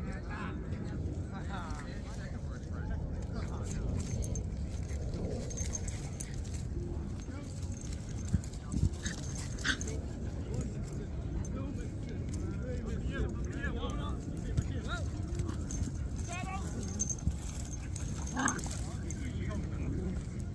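Two small dogs, a young dog and a puppy, playing rough on grass, with occasional short high-pitched dog cries scattered through. A steady low rumble runs underneath.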